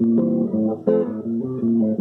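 Seven-string acoustic guitar (violão de 7 cordas) played solo: a quick run of plucked single notes moving through the low and middle strings, with a sharper chord struck about a second in.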